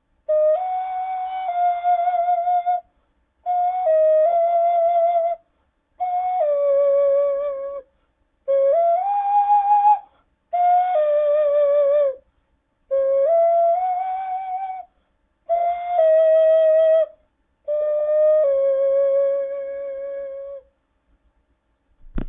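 Eight-hole Peruvian ocarina playing a slow melody in eight short phrases of a few notes each, with brief pauses for breath between them.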